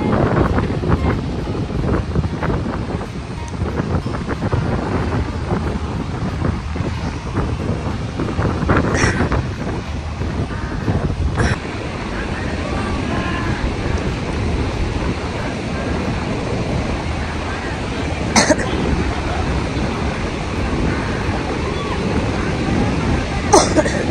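Wind rumbling on the microphone over the steady wash of ocean surf, with indistinct voices in the background. A few brief louder blasts come through, the first about nine seconds in.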